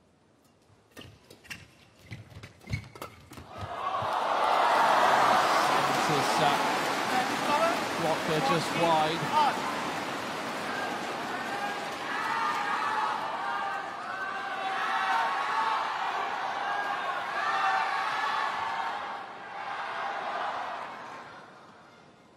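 Badminton rally ending: about half a dozen sharp racket-on-shuttlecock hits in quick succession. Then the crowd in the arena breaks into loud cheering and shouting as the point is won, carrying on for many seconds before it dies down near the end.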